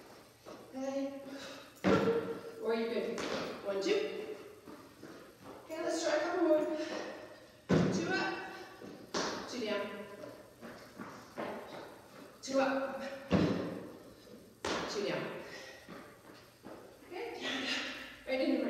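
Feet landing on a plastic aerobic step platform, giving a few sharp thumps several seconds apart, with a woman's voice talking between them.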